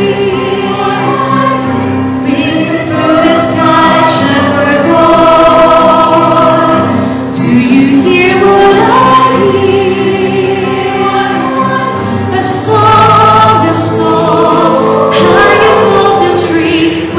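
Choir singing, with a woman singing into a handheld microphone in front of the choir: long held notes with vibrato.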